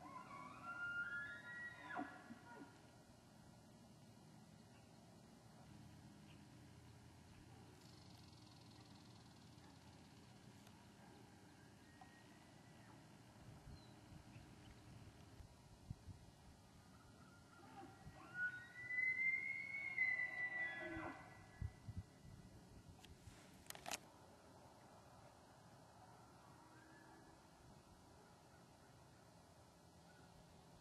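Faint bugling of bull elk in the rut: a short rising whistle near the start, then a longer, louder bugle with harmonics about two-thirds of the way in, followed by a few low grunts.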